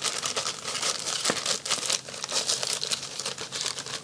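Clear plastic packaging around a cross-stitch chart crinkling as it is handled and turned, a dense run of irregular crackles.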